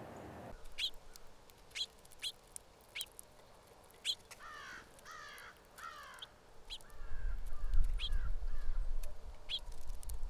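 Wild birds calling outdoors: short sharp chirps about once a second, and a run of three harsh calls falling in pitch about four and a half seconds in, followed by a softer series of calls. A low rumble joins from about seven seconds.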